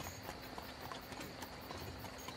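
Faint horse hooves clip-clopping, the background sound of a horse-drawn carriage ride.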